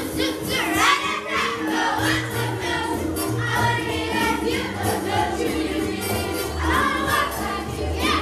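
A chorus of children singing a lively song-and-dance number over musical accompaniment with a steady, pulsing bass line.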